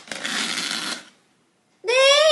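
Clear plastic bag crinkling as it is handled, for about a second. Near the end a woman's voice starts a short exclamation.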